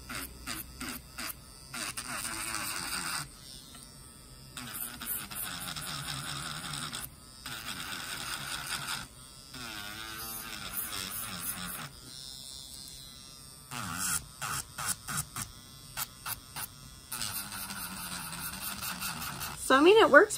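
Portable electric nail drill (e-file) running with a sanding head fitted, its motor speed turned up and down several times so that its pitch and level shift in steps. There are runs of quick clicks near the start and again between about 14 and 17 s.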